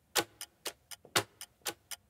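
Clock ticking sound effect, a louder tick about every half second with a softer one between, marking time while waiting.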